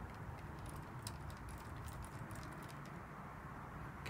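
Faint, irregular light ticking of a thin wooden stick stirring pH buffer solution in a plastic cup, over a steady low background rumble.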